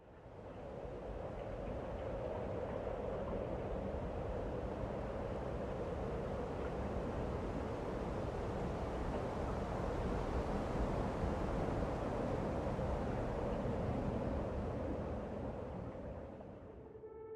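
Wind rushing steadily through tall conifers, fading in at the start, with a low rumble underneath.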